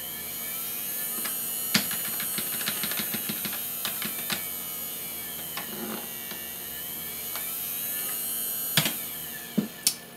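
Small electric motor run by a homemade motor controller, giving a steady electric whine that sweeps slowly up and down in pitch. A run of clicks comes in the first half and a few sharp clicks come near the end.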